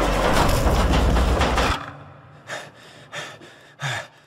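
Horror-trailer sound design: a loud, deep rumbling noise that drops away about two seconds in, followed by a quieter stretch with a few short bursts.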